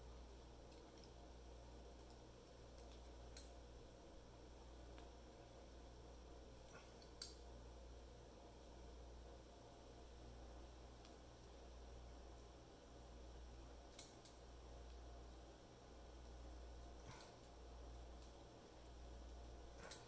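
Near silence: a steady low room hum with a few faint clicks, as pliers grip and pull rawhide strands tight on a braided knot.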